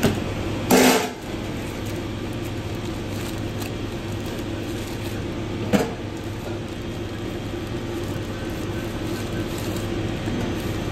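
Steady hum of commercial kitchen ventilation and fryer equipment, with a loud metallic clatter of a wire fry basket being handled about a second in and a shorter metal knock just before six seconds as tongs load patties into the basket.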